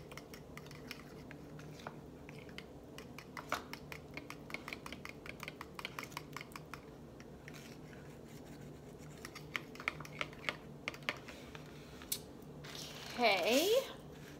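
Fork stirring and whisking a thin sauce in a small bowl: rapid, light clicking and tapping of the utensil against the bowl, thinning out after about eleven seconds.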